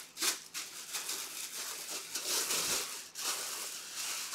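Plastic bag crinkling and rustling in uneven bursts as a helmet is pulled out of its wrapping by hand.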